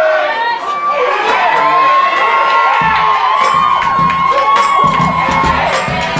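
Theatre audience cheering, whooping and screaming, many high voices overlapping. Music with a low bass beat comes in about halfway through under the cheering.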